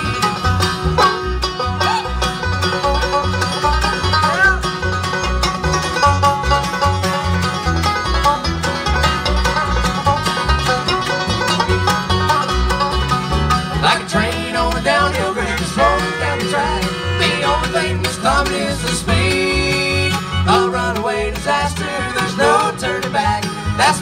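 Live bluegrass band playing an instrumental break: banjo, acoustic guitar, fiddle and upright bass, with the bass keeping a steady pulsing beat under the picked strings.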